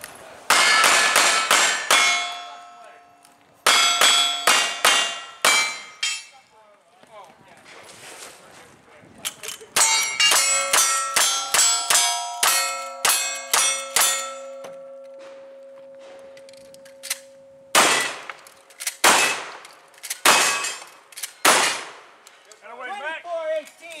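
A cowboy action shooting stage fired on steel targets. Two strings of five revolver shots come first, then a fast string of about ten lever-action rifle shots, then four heavier shotgun blasts near the end. The steel plates clang and ring on after the hits. The run is called clean, with no misses.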